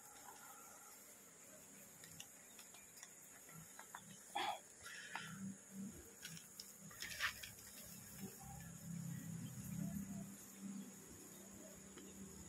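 Faint buzzing of a cluster of Asian honeybees (Apis cerana) disturbed as they are scraped off the hive wall with a piece of card. The hum swells from about five seconds in, with a few short scrapes along the way.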